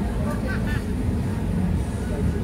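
Busy outdoor street background: a steady low rumble with people's voices, a short burst of talk about half a second in.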